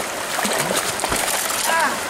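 Hooked rainbow trout thrashing and splashing at the surface of a creek, over the steady rush of flowing water.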